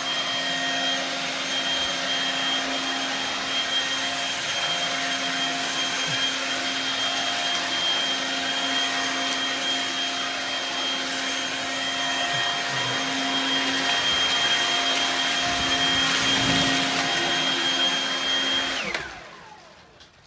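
Stihl BGA 57 battery-powered leaf blower running steadily at full speed, a motor whine over the rush of air. It is switched off near the end and the fan winds down to a stop.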